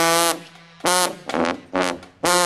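Marching tuba blowing loud, short brassy notes: a held note at the start, a note that scoops up into pitch about a second in, then three quick short notes.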